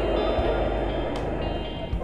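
Steady running noise of a TransPennine Express Class 185 diesel multiple unit standing at the platform after pulling in, with background music laid over it.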